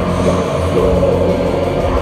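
Black metal band playing live, loud and continuous, with distorted guitars, bass and drums.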